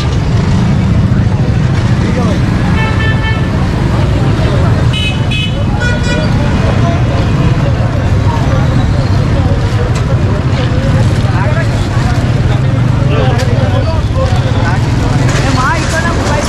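Busy street traffic noise with a steady low engine rumble, and a vehicle horn tooting twice, about three seconds and five seconds in, over background chatter.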